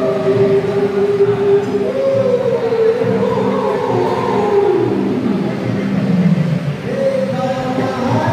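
A man singing into a microphone, heard through a speaker, holding long drawn-out notes. Partway through, his voice steps up, then slides slowly down in pitch.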